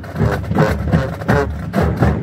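Marching band sousaphones playing a loud, brassy low line over snare drums, with drum strokes coming at a steady beat.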